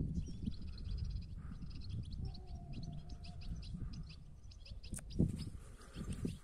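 European goldfinches twittering: a steady run of short, high chirps, several a second. Low wind rumble on the microphone underneath, and a single sharp click about five seconds in.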